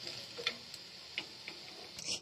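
A steel spoon clicking lightly against a steel frying pan while stirring chicken fry: a few faint, irregular clicks over a faint steady hiss.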